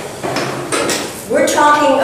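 Light clinking and clattering of hard objects, then a person's voice about a second and a half in.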